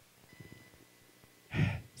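A pause in speech, then near the end a short, sharp breath taken close to a handheld microphone just before talking resumes.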